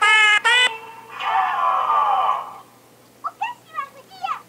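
Talking plush frog toy singing the last notes of a song in a high, electronic voice, then a falling, warbling sweep. Short high-pitched voice sounds start near the end.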